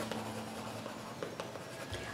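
Yellow chalk writing on a small handheld chalkboard: faint scratching strokes with a few light ticks.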